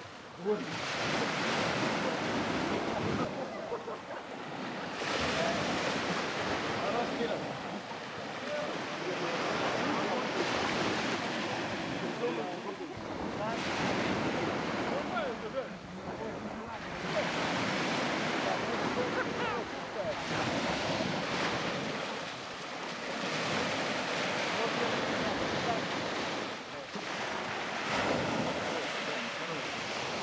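Sea waves washing and water splashing as swimmers move through the sea, in surges every few seconds, with wind on the microphone.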